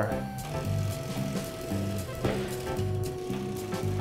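Background music: held notes over a pulsing bass line.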